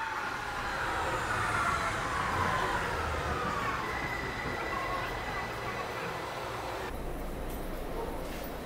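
MARTA rapid-transit train pulling into the station, its electric motor whine falling steadily in pitch over about five seconds as it slows. About seven seconds in this gives way to a duller low rumble inside the car.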